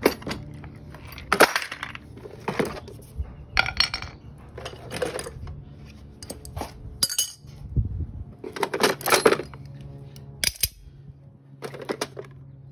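Steel hand tools clinking and clanking against one another as they are rummaged through and lifted out of a plastic toolbox: a string of irregular metallic knocks, each with a short ring.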